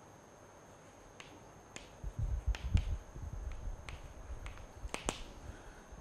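Chalk on a blackboard while writing: a scattered series of sharp clicky taps as the stick strikes the board, with some dull low thumps about two to three seconds in.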